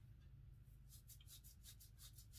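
Faint, quick rustling of fingers twisting strands of natural hair into a twist, a steady run of strokes about six a second starting about a second in, over a low steady hum.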